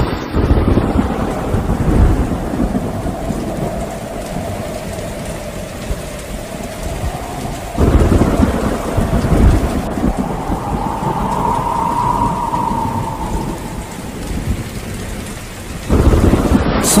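Steady rainfall with rolling thunder, and a sudden loud thunderclap about eight seconds in.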